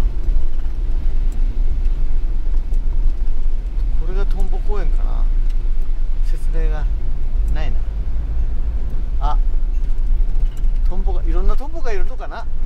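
Steady low rumble of a camper van driving along a wet road, with short stretches of a voice talking over it.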